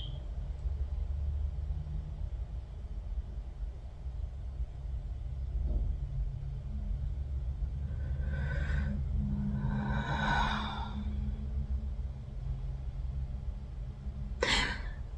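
A person breathing audibly during a silence over a steady low hum: a short breath about eight seconds in, then a longer, louder breath out about ten seconds in.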